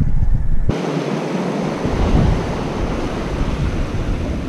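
Wind buffeting the microphone, then, from about a second in, a steady rush of surf breaking and washing over coastal rocks.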